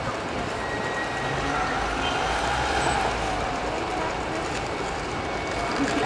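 Street traffic: a vehicle engine running with a low rumble that swells slightly in the middle, under faint voices.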